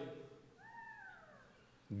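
A faint, brief high-pitched cry, meow-like, that rises briefly and then falls away over about a second.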